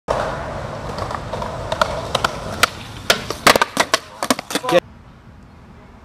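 Skateboard wheels rolling on pavement with a run of sharp board clacks, cut off abruptly about five seconds in. Faint outdoor background noise follows.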